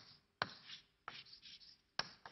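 Chalk writing on a blackboard: several separate strokes, each opening with a sharp tap and trailing off in a short scratchy drag.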